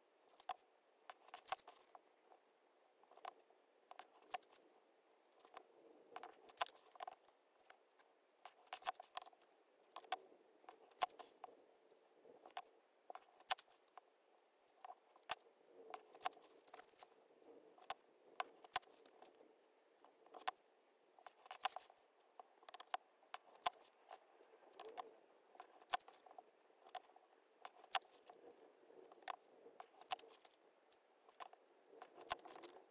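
Quiet paper-craft handling, sped up: paper folded and creased with a plastic bone folder against a steel ruler on a cutting mat, giving irregular clicks, taps and paper rustles several times a second.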